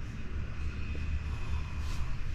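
Steady low mechanical hum, with a faint thin high whine in the middle and a brief click near the end.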